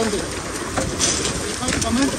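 Steady noise of a celery harvesting rig working in the field, with a few short clicks and a brief rustle about a second in as celery is handled. A voice comes in faintly near the end.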